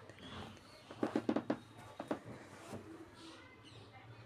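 Spatula scraping and knocking against a metal kadhai while stirring poha: a quick cluster of knocks about a second in, then a few single taps.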